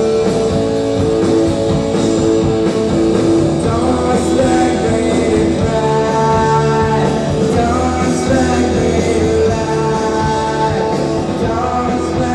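Rock band playing live on guitar, bass and drums, captured by an audience recorder in a theatre.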